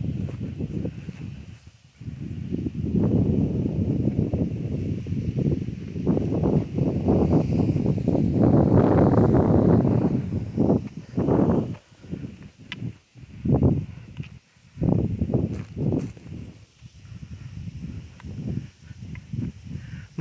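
Footsteps and rustling through dry grass. For the first half the rustling runs almost without break; after that it comes as separate steps, about one a second.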